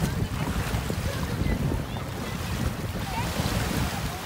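Choppy shallow surf washing in and splashing around wading legs, with wind rumbling on the microphone.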